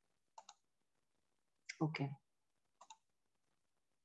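A video-call line cut to dead silence between sounds, broken by a spoken "okay" about two seconds in. Two brief faint double clicks come before and after it.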